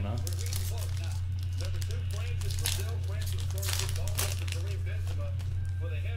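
Foil trading-card pack wrapper being torn open and crinkled by hand, in short rustling bursts, the strongest about two and a half and four seconds in, over a steady low hum.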